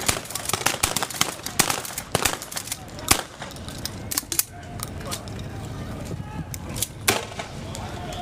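Police less-lethal launchers firing: a rapid run of sharp pops for the first few seconds, then scattered single shots, with voices underneath.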